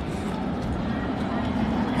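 Steady outdoor background noise of a busy amusement-park walkway: a wash of distant crowd voices and low rumble, with no single sound standing out.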